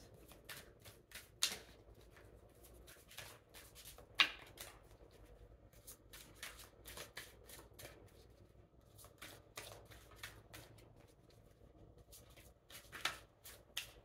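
Tarot cards being shuffled by hand, overhand, with a run of soft flicks and slaps as the cards are dropped from one hand into the other. A sharper snap comes about four seconds in.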